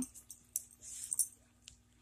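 Faint rustling and a few light clicks as a small dog in a cloth outfit moves about on carpet, falling quiet near the end.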